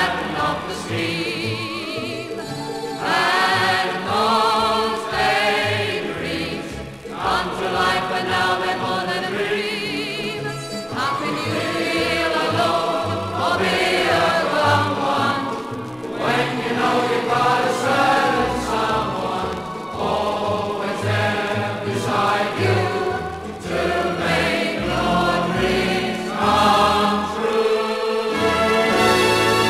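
A 1950s popular song played from a Decca 78 rpm record: an orchestral arrangement with a choir singing in long phrases.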